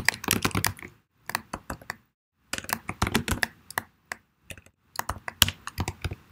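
Typing on a computer keyboard: quick runs of keystrokes broken by two short pauses, about a second in and again about four seconds in.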